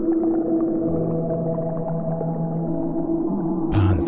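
Ambient music: a steady, sustained droning chord with slowly shifting low notes. Near the end a brief, louder burst cuts in over it.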